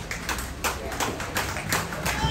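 Scattered hand-clapping from an audience, several sharp, uneven claps a second.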